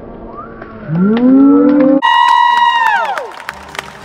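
A drawn-out vocal sound. A low note rises for about a second, then breaks suddenly into a high held squeal that slides down and fades out.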